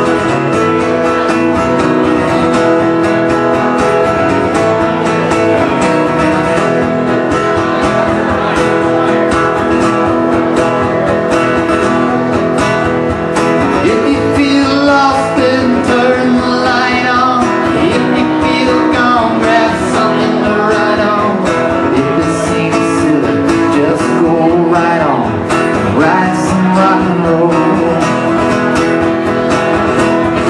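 Live rock and roll song played loud on a strummed acoustic guitar, with a steady strumming rhythm.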